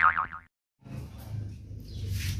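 A springy comedy sound effect: a wobbling, warbling tone that dies away in the first half second and cuts off, followed by faint room noise.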